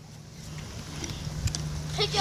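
Hands scooping and patting damp sand in a plastic sandbox, a soft scraping that grows louder, with a few light clicks and a steady low hum behind it.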